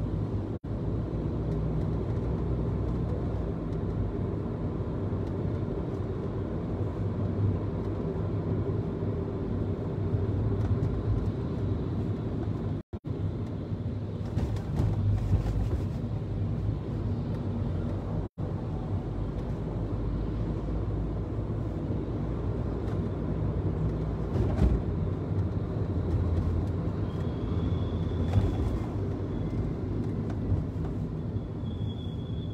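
A car driving steadily along a city street: engine and road rumble, with the sound cutting out for an instant three times.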